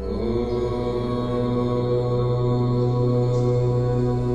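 Meditation music in which a low, steady chanted drone comes in suddenly at the start and holds on one pitch with rich overtones.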